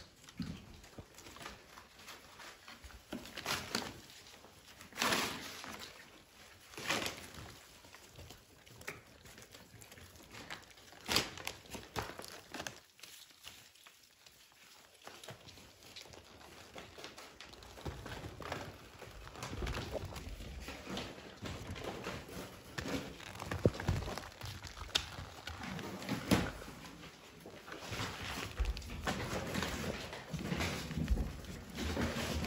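Puppies playing in crumpled brown packing paper: the paper crinkles and rustles in irregular spurts, with thumps and paw steps on a hard floor.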